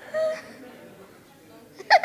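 Young people laughing: a short laughing sound just after the start, a quiet pause, then a burst of laughter near the end.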